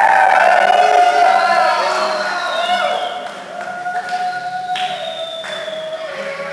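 A group of people shouting and singing together, several voices overlapping, loudest for the first couple of seconds before dying down to a few drawn-out voices.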